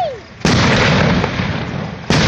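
Aerial firework shell bursting about half a second in: a sudden loud boom that rolls and echoes away over the next second and a half.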